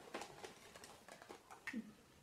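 Faint scattered clicks and light rustling of small plastic bingo dabbers being handled and taken out of a coin purse.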